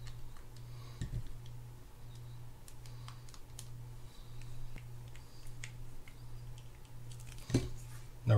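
Scattered small clicks and ticks of a mini screwdriver and small metal parts as screws are driven into the bail arm of a Shimano Spirex 2500FG spinning reel. There is a louder run of clicks near the end, over a steady low hum.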